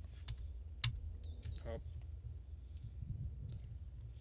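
A few sharp clicks from computer keyboard keys, the loudest about a second in, as a question is entered into an AI chatbot, over a low steady rumble.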